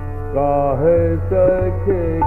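Male Hindustani classical vocalist singing a slow, gliding khayal phrase in raag Yaman Kalyan over a steady tanpura drone; the voice comes in about a third of a second in.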